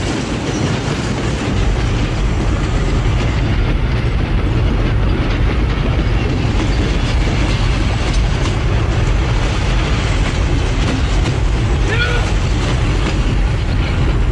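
A loud, steady rumble with a deep low end.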